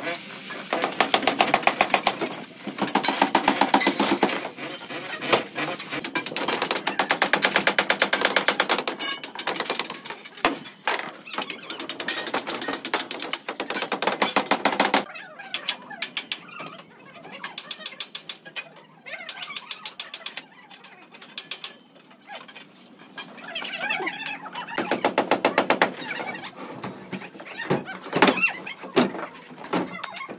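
A fast mechanical rattle in repeated bursts of one to three seconds with short breaks between, the pattern changing about halfway through.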